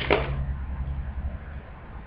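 A light knock just after the start, then quiet handling sounds over a low steady hum, as a pair of earrings is picked up and held up.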